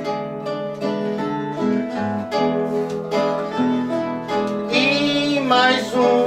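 Acoustic guitar and a second plucked string instrument playing an instrumental break between verses of improvised folk singing; a man's singing voice comes in near the end.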